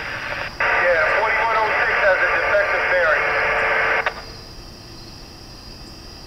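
Railroad radio voice traffic through a scanner, thin and tinny: one transmission ends just after the start, and another cuts in abruptly about half a second later and runs until about four seconds in, where it stops with a click. Low hiss follows.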